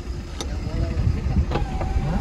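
Car engine and road rumble heard from inside the cabin as the car pulls away, with faint voices and a couple of light clicks.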